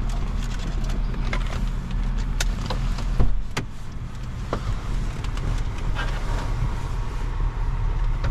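Car engine idling with a steady low hum inside the cabin, with scattered clicks and knocks from things being handled and one loud thump a little over three seconds in.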